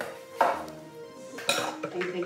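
Hard objects clinking and clattering a few times, the sharpest about half a second in and again about a second and a half in, over steady background music.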